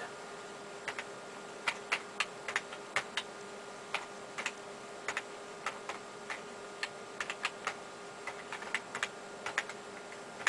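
Typing on a computer keyboard: irregular key clicks, a few a second, with short pauses between bursts, over a steady background hum.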